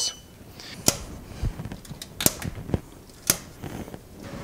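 About five sharp, separate clicks and light knocks, scattered over a few seconds against a faint steady background.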